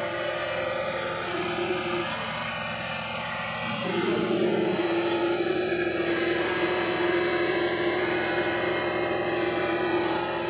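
Vevor MX400 mini lathe running, its motor giving a steady hum. About two seconds in the hum weakens for a couple of seconds, then it comes back at full strength.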